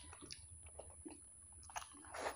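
Faint chewing of soft fried egg, with small scattered wet mouth clicks.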